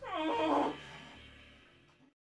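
A sudden whimpering cry that falls in pitch over about half a second, then fades away and stops abruptly at the end, over a low steady musical drone.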